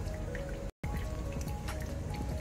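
Background music with light dripping from a thin stream of pink pudding mixture dribbling into the liquid in a glass dish. The sound cuts out completely for a moment about three-quarters of a second in.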